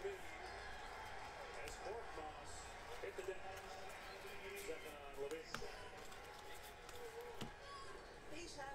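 Faint, distant voices, with a few soft ticks from trading cards and a plastic top-loader being handled and shuffled.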